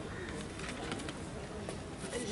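Faint background of an open-air seated audience in a pause between speech, with no clear foreground sound.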